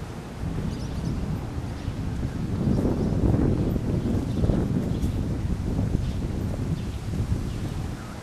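Wind buffeting the microphone of a handheld outdoor camera: a low rumbling rush that swells a few seconds in, then eases off.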